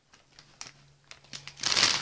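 Plastic packaging of tea lights being handled: a few faint clicks and light rustles, then a loud crinkling near the end as the pack is picked up.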